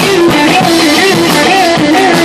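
Live heavy rock band playing loud, with electric guitar and drums, heard close to the stage.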